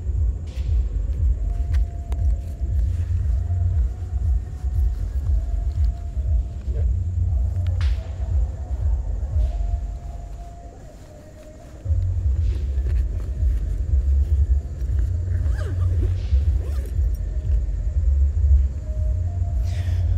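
Wind buffeting the clip-on microphone: a loud, gusty low rumble that drops away for about two seconds a little past the middle, then returns.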